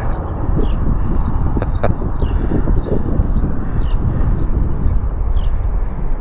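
A small bird chirping over and over, short falling chirps about twice a second, over a steady low rumble of wind on the microphone.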